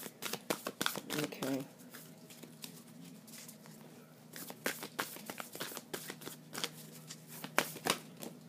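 A deck of Moonology oracle cards being shuffled by hand: quick runs of soft card clicks for the first second and a half, a quieter stretch, then more shuffling clicks from about four and a half seconds on.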